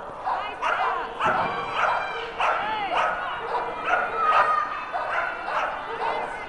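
Flyball dogs barking repeatedly, about two barks a second, with people's voices mixed in.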